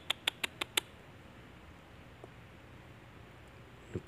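A quick run of about six short, sharp clicks in the first second, then a quiet background with one faint tick a little past two seconds.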